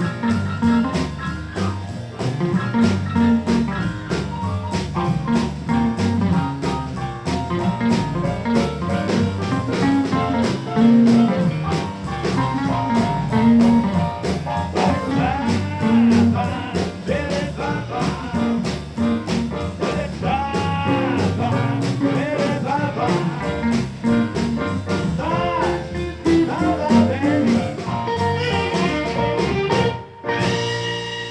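A live blues band playing a song: electric guitar over upright bass, a drum kit and keyboard, with a steady beat throughout.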